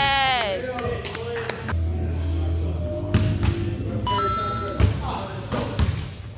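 Basketball bouncing and thudding on a gym floor, with players' voices echoing in the hall. A long, pitched sound dies away in the first half-second, and a short steady tone sounds about four seconds in.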